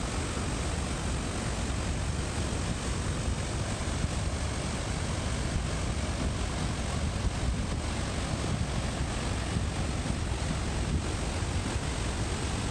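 Steady rushing roar of a mountain waterfall cascading over rocks, with wind rumbling on the phone's microphone.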